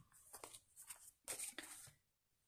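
Near silence with a few faint, short rustles and soft knocks as a paperback colouring book is handled and lifted off a cutting mat.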